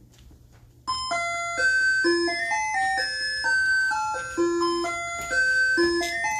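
Electronic school bell chime starting suddenly about a second in, playing a melody of clear, held bell-like notes that step up and down, signalling the start or end of a class period.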